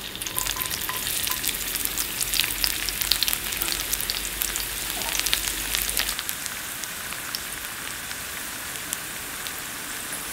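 Sliced garlic frying in olive oil in a skillet: a dense, crackling sizzle, busiest in the first few seconds, that settles into a steadier, gentler sizzle about six seconds in.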